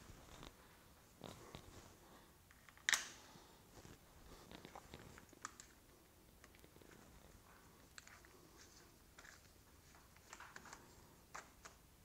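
Faint clicks and light handling sounds of a hand screwdriver turning the screws of a motorcycle's handlebar switch housing, the fog light switch assembly, as it is refitted. One sharper click comes about three seconds in.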